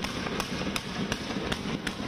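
A rapid series of sharp bangs, about two or three a second, over a steady noisy din, as a volley of tear gas canisters is fired into a street.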